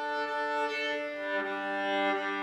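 Solo viola playing slow, long-held bowed notes, stepping down to a lower note about a second and a half in.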